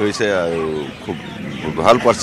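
A man's voice in a drawn-out syllable that falls slightly in pitch for nearly a second, followed by quieter talk.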